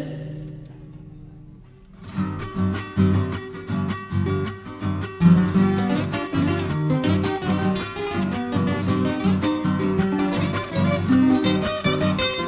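Instrumental break of an Argentine chacarera: acoustic guitar strumming and picking in a brisk rhythm, starting about two seconds in as the last sung note fades away.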